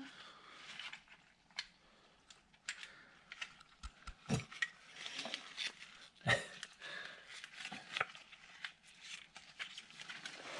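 Gloved hands working a strap wrench onto an oil filter: scattered clicks, rubbing and light knocks of the tool, with two louder knocks about four and six seconds in.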